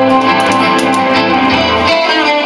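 Amplified acoustic guitar being strummed, with a harmonica played on a neck rack over it; the music is steady and continuous.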